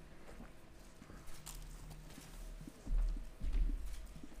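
Footsteps of shoes knocking on a wooden stage floor as a person walks, with a few louder low thumps near the end.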